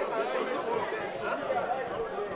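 Faint background chatter of many voices in the chamber, a low murmur between speeches with no single clear voice.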